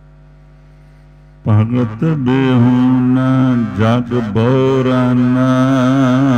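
Gurbani verses of the Hukamnama chanted by a single voice in a slow, wavering melody over a steady drone. The drone sounds alone for about the first second and a half, then the chanting of the next line comes in.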